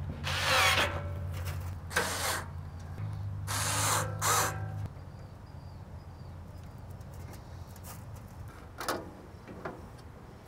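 Cordless electric screwdriver running in spurts, driving the screws that hold the gas valve back onto the burner assembly; its motor stops about five seconds in. A few light clicks of metal parts being handled follow.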